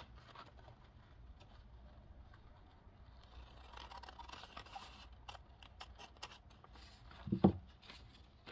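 Scissors cutting through a thin paper coffee filter: faint crisp snipping and paper handling, with a run of sharp clicks past the middle. One short, louder thump comes near the end.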